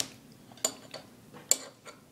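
Metal cutlery clinking against a ceramic bowl while a child eats: three short clinks, the last one the loudest.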